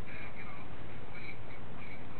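Faint, tinny voice of the caller leaking from a telephone handset's earpiece in short snatches, over a steady hum and hiss.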